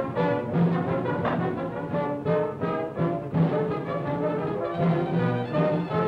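Orchestral cartoon score with brass, playing a run of short, separate notes over a low bass line.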